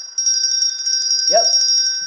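Small brass hand bell shaken rapidly, ringing on with fast repeated clapper strikes.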